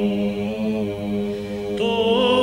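Slow sung chant: a low drone note held steady beneath long, slowly moving vocal notes, with a new phrase coming in just before the end.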